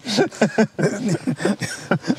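A man laughing in short, repeated bursts.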